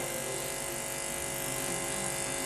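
Steady electrical buzz with hiss from a podium microphone and sound-system feed, with no voice on it.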